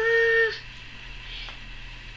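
A young girl's voice holding one long, steady, sung-out "mamaaa" call, which ends about half a second in; after that, quiet room tone.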